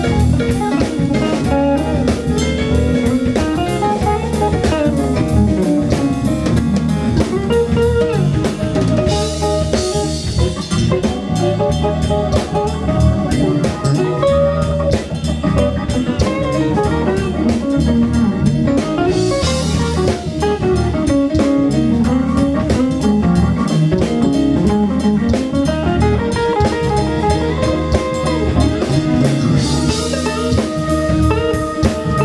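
Live blues band playing an instrumental passage: hollow-body electric guitar, keyboards, bass and drum kit. Cymbal crashes come about every ten seconds.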